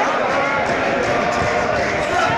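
Street crowd of marchers walking: a steady babble of many overlapping voices, with footsteps close by.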